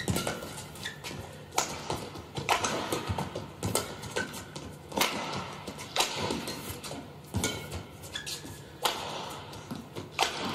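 Badminton rackets striking a shuttlecock back and forth in a fast rally, a sharp crack about every second, over faint arena murmur.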